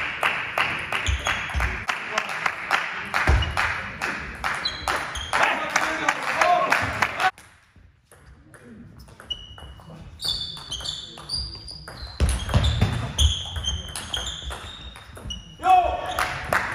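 Table tennis rallies: the ball clicking sharply on bats and table in quick runs, over a murmur of voices in the hall. Partway through the sound drops out almost completely for a moment, then play resumes with more ball clicks and short high shoe squeaks on the hall floor.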